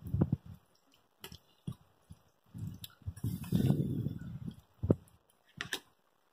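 Spoon stirring thick, cheesy macaroni and cheese in a saucepan: irregular wet squelching, with a longer stretch of stirring a little past halfway and a few sharper clicks near the end.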